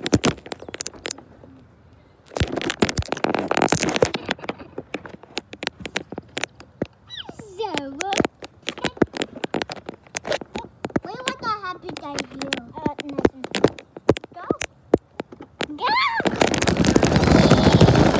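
Fingers tapping and rubbing on a phone's microphone, making a dense run of sharp clicks and crackles. A child's high, wordless voice slides up and down a few times, and a loud rushing noise on the microphone takes over in the last two seconds.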